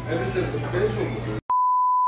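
Indistinct voices over a low steady hum, cut off abruptly about one and a half seconds in by a single steady, high, pure beep tone, an edited-in bleep that is louder than the room sound before it.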